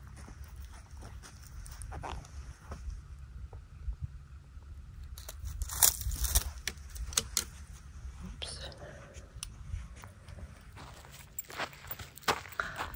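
Dry leaves and twigs crackling and rustling as a small dog roots and sniffs through them, with a denser run of sharp crackles around the middle, over a steady low rumble.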